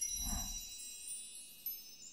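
Logo sting sound effect: a shimmering chime of many high bell-like tones with a rising sparkle, ringing and slowly fading, with a soft low whoosh about a third of a second in.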